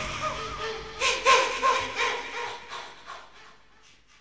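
Closing seconds of a rock song: a few short, sharp hits with brief pitch-bending cries about a second in. The sound then dies away to near quiet by the end.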